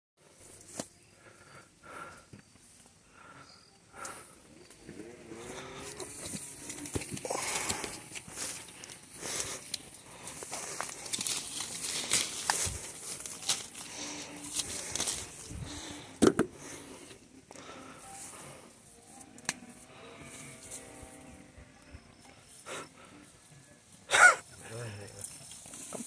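Leaves and branches of a lime tree rustling, with scattered twig snaps and clicks, as limes are picked by hand. Faint voices come and go, and a short loud voice sounds near the end.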